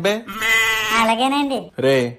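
A single long, wavering, bleat-like cry held for about a second and a half.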